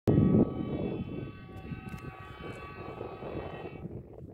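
DIC-40 rail maintenance vehicle's horn sounding one long steady blast that cuts off just before four seconds in. A loud low rumble sits under it in the first half-second.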